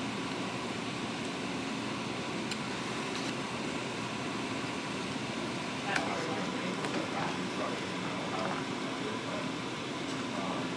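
Steady office room noise with faint voices in the background, and a few light clicks as a plastic fork works through a foam takeout container.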